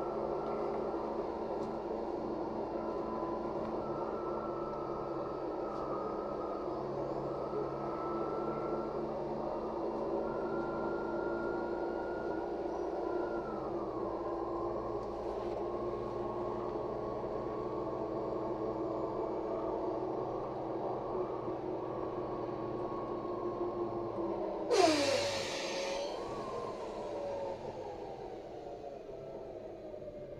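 LiAZ 5292.67 city bus heard from inside the passenger cabin while driving: a steady drivetrain whine of several tones over a low engine drone. About 25 s in, a loud burst of air hissing lasts about a second, then the whine falls in pitch as the bus slows.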